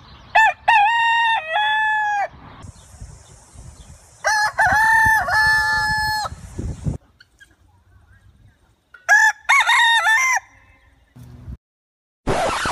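Rooster crowing three times, each crow a long held call, the last one shorter.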